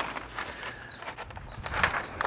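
Pink butcher paper rustling and crinkling in scattered short crackles as it is handled and folded around smoked beef short ribs. A low rumble of wind on the microphone comes in near the end.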